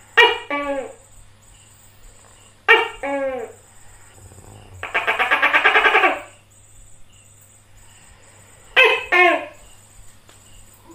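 Tokay gecko calling its loud two-syllable "to-kay", each syllable falling in pitch, three times: at the start, about 3 s in and near the end. Between them, around 5 to 6 s, comes a fast rattling call.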